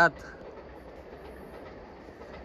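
A Vande Bharat Express train passing at reduced speed, a steady, even noise of the train running on the track.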